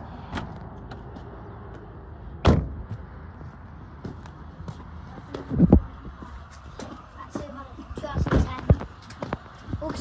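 Car doors being shut: a thud about two and a half seconds in, another a little before six seconds, and two more close together near the end.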